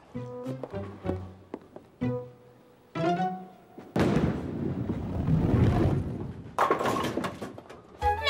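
Light plucked-string cartoon music, then about four seconds in a bowling ball rolling down the lane for a couple of seconds, ending in a sudden crash of pins near the end.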